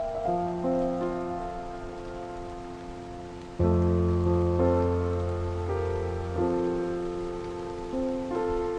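Slow, calm improvised chords on a sampled grand piano (Spitfire LABS Autograph Grand), played from a digital keyboard over a steady rain ambience. A deep bass chord comes in about three and a half seconds in, the loudest moment, and rings for about three seconds.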